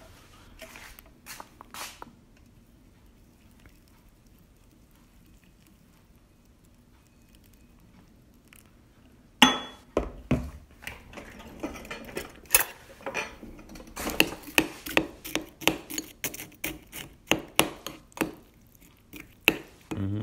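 Cutlery mashing Weetabix against a ceramic bowl, repeated knocks and scrapes about twice a second through the second half, after a sharp knock about halfway in. The first half is mostly quiet apart from a few clicks.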